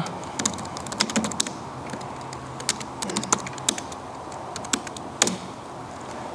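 Typing on a computer keyboard: irregular key clicks in short flurries with pauses between.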